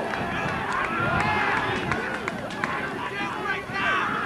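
Several people's voices overlapping: ultimate frisbee players shouting and calling out to each other, with no clear words.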